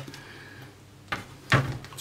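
Wooden spoon knocking and scraping against a stainless steel pot while sticky muesli mass is pushed out: a light click about a second in, then a louder knock near the end.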